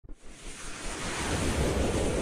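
A whoosh sound effect for an animated logo sting: a rushing noise that swells up from silence over about two seconds.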